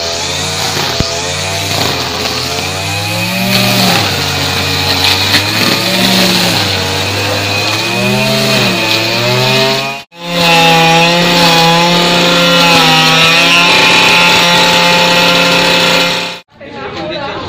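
Petrol brush cutter engine running as it cuts grass, its revs rising and falling again and again. After a brief break about ten seconds in, it runs steadily at high revs.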